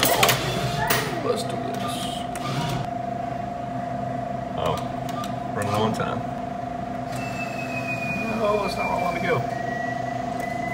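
Arcade claw machine in play: a steady electronic hum, with faint gliding whines from about seven seconds in.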